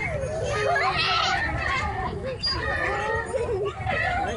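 Many children's voices overlapping in indistinct chatter and calls, a steady mix of playground voices with no single clear speaker.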